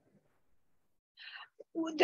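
Near silence on a video-call line for about a second, then a short breathy sound, a faint click, and a woman's voice starting to speak near the end.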